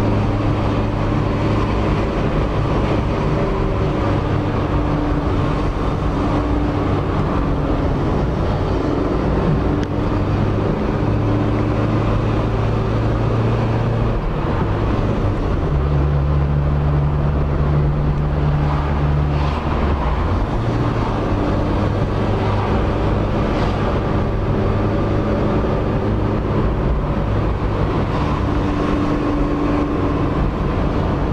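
Car engine and road noise heard from inside the cabin while driving: a steady low hum over tyre and road rumble. About halfway through, the engine note steps up for a few seconds, then settles back.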